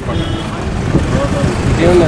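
Indistinct men's voices talking, over a steady low rumble.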